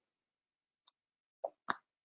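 Near silence, broken by two brief soft pops close together about a second and a half in.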